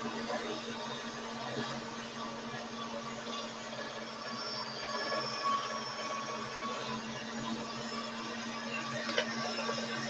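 A steady low hum over faint background noise, with a light click near the end.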